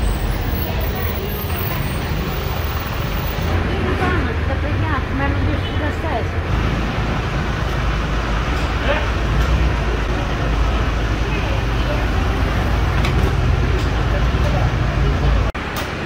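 A fire engine's engine running at idle close by, a steady low hum, with people's voices in the street over it. The sound breaks off suddenly near the end.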